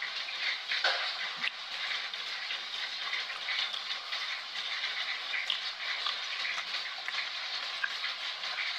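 Steady rain: an even hiss with faint scattered patter.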